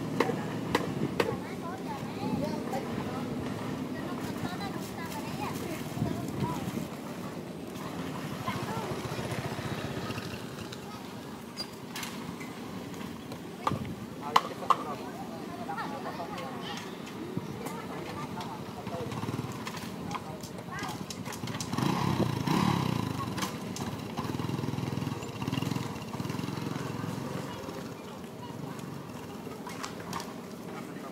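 People's voices talking in the background, with a couple of sharp clicks about halfway through.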